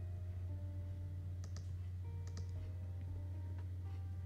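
Clicking at a computer while drawing: a pair of sharp clicks about one and a half seconds in, another pair just after two seconds and a single click near the end. Under them runs a steady low hum, with faint background music.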